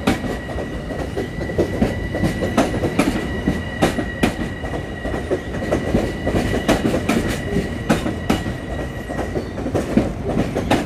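Long Island Rail Road M7 electric multiple-unit train rolling past the platform, its wheels clicking irregularly over the rail joints over a steady rumble. A thin, steady high whine runs with it and stops shortly before the end.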